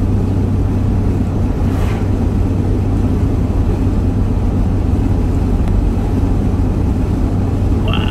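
Steady low drone of a vehicle cruising at highway speed, heard from inside the cab: engine hum and tyre noise.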